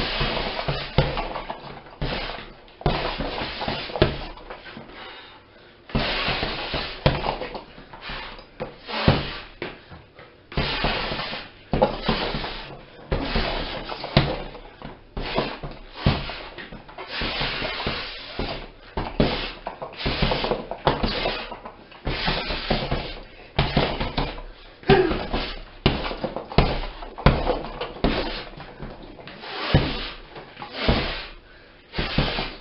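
Punches landing on a hanging red leather heavy bag in quick, irregular combinations: clusters of sharp thuds a second or two apart, with the bag shifting between blows.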